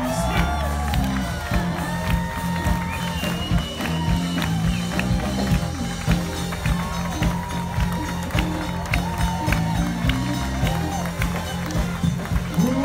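Live soul band playing on stage, heard from the audience: a steady bass line and drums under guitar and melodic lines.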